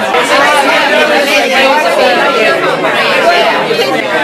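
Many people talking at once: dense party chatter close to the microphone, with no single voice standing out.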